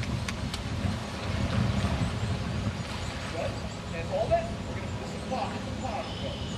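Faint voices at a distance over a steady low rumble.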